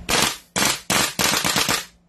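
BLK M4A1 gas blowback airsoft rifle firing on full auto, its bolt cycling with each shot: four quick bursts of rapid shots, the last one the longest.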